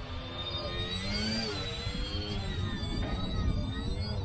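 Twin electric motors and propellers of a foam-board RC airplane in flight, a whine that rises and falls in pitch with throttle, over a low rumble of wind on the microphone.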